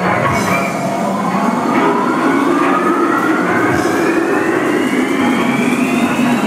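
Electronic dance music at a build-up: a synth tone sweeping slowly and steadily upward in pitch over a sustained low drone, played loud over a club sound system.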